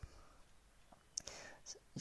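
Near silence in a pause between spoken phrases, broken by a faint breath and a couple of small mouth clicks a little over a second in.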